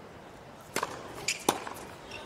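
A tennis racket striking the ball on a serve and then on the return, two sharp pops about three quarters of a second apart, over faint court ambience.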